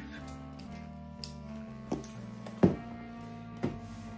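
Background music with steady held notes. Over it, a cardboard mailing box knocks against a tabletop three times as it is tipped over and laid flat; the second knock, past the middle, is the loudest.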